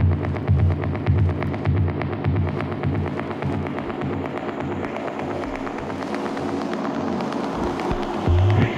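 Techno played from vinyl in a DJ mix: a kick drum about twice a second under evenly ticking hi-hats. About halfway through, the kick drops out, leaving the hi-hats and steady synth tones.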